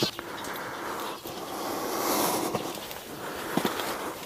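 Footsteps climbing stone steps, a few scattered scuffs and taps, over a steady rushing noise that swells slightly around the middle.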